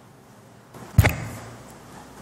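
A single sharp thump about a second in, with a short fading tail, over quiet room tone.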